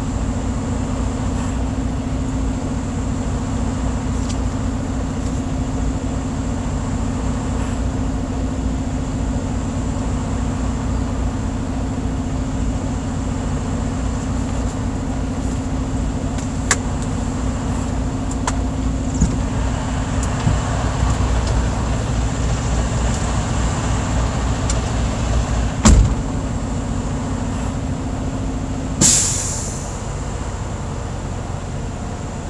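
Semi-truck diesel engine idling steadily, heard from inside the cab, with a few clicks and a knock about 26 seconds in. Near the end, a short loud hiss of compressed air from the truck's air system that fades out.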